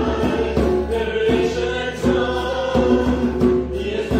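Group of voices singing a worship song together, accompanied by strummed acoustic guitar.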